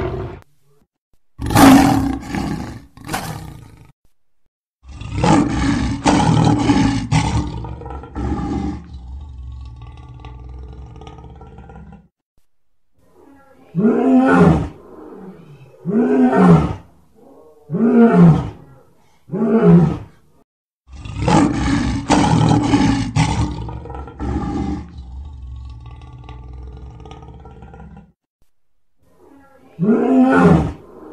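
Lion roaring: a couple of short harsh bursts, then a long roar that trails off, a run of four short grunting roars about two seconds apart, and another long roar.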